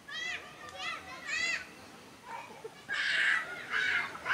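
Young voices shouting during a football match: three short high-pitched calls in the first second and a half, then louder, rougher shouting near the end.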